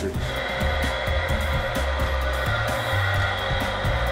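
Electric meat slicer's motor running with a steady whine, starting just after the beginning, as smoked sailfish is cut into thin slices. Background music with a bass line plays underneath.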